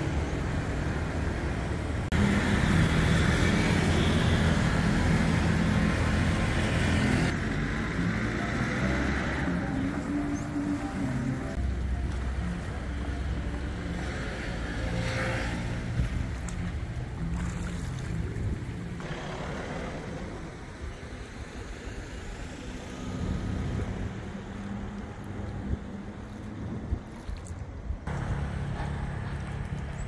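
Outdoor background noise from a run of short clips joined by abrupt cuts every few seconds, with road traffic in parts.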